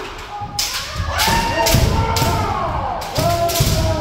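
Kendo practice: several practitioners' kiai shouts, long and falling in pitch, overlap with repeated stamping of feet on the wooden dojo floor and the sharp cracks of bamboo shinai striking armour.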